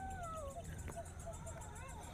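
A faint animal call: one falling call in the first second, then a few short chirps and a brief wavering call near the end.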